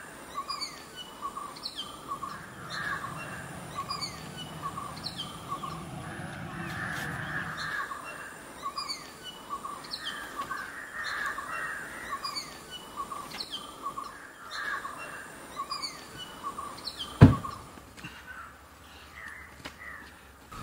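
Birds calling over and over, a short falling chirp repeating about once a second over patchy chatter. A low hum stops about eight seconds in, and a single sharp knock comes near the end.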